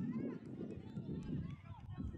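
Distant, indistinct voices of players and spectators calling and shouting, over a low rumble.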